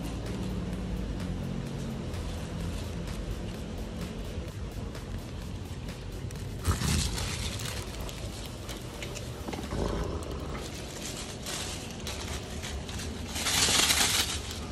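Background music, with bursts of crinkling and rustling from a large plush toy with crinkle material inside as a dog mouths and shakes it, about seven seconds in and again near the end.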